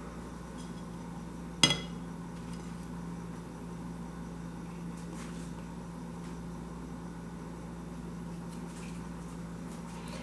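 A single sharp clink of glass, about two seconds in, as a glass dish used as a paint palette is handled, over a steady low hum.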